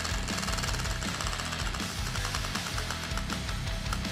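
Prize wheel spinning, its flapper ticking rapidly against the pegs and slowing as the wheel winds down to a stop.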